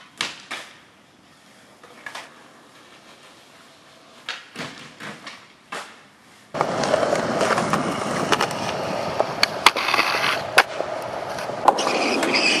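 Skateboard sounds: a few sharp clacks of the board on the pavement and a ledge. Then, about six and a half seconds in, the loud, close rolling of skateboard wheels on concrete begins, broken by more sharp clacks of the board.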